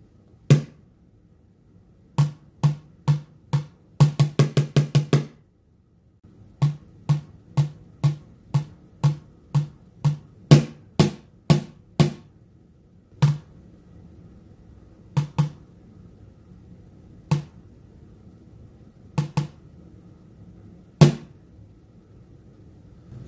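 A series of sharp, irregularly timed percussive hits, made as a sound test for sound-reactive LED lights. There are a few single hits, then a quick run of about six a second around four seconds in, then a steady run at about two a second, then scattered hits toward the end.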